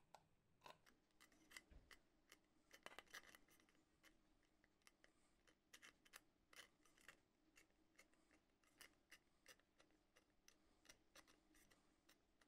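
Faint, irregular small clicks and creaks, several a second, as steel combination pliers grip and bend the thin rim of a sheet-metal dish.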